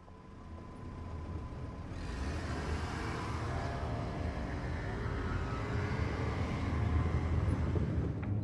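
City street traffic fading in and growing steadily louder: a low rumble of engines and road noise, with a faint steady high tone in the first two seconds.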